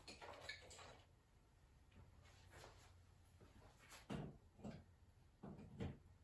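Near silence: room tone, with a few faint, brief soft knocks or rustles in the second half.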